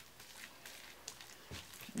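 Faint soft squishing and rubbing of hands working a creamy deep conditioner through wet hair, with a few light ticks.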